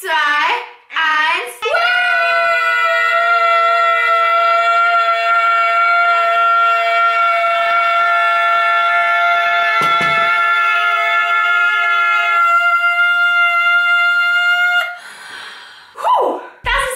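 Two female voices, a young woman's and a girl's, hold one long sung note together, steady for over ten seconds, after a short wavering vocal opening. One voice drops out about twelve seconds in and the other carries on a little longer, then a breathy exhale.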